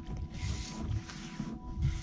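Uneven low rumbling, with a short hiss from about half a second to a second in.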